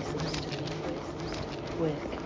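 A person's low, murmured chanting of a repeated affirmation, the words running together in a steady drone.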